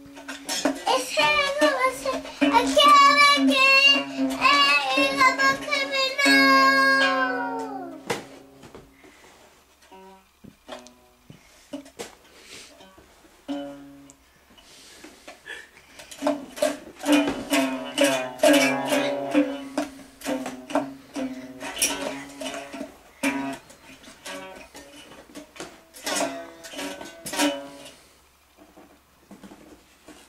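Small toy acoustic guitar strummed and plucked by a toddler in two loud stretches: one in the first eight seconds and another from about the middle to near the end, with only scattered plucks in between. A child's voice sings along at times.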